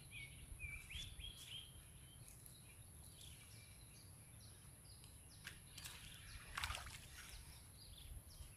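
Quiet outdoor ambience: faint bird chirps in the first two seconds over a steady thin high whine, then a few soft clicks and a brief rustle.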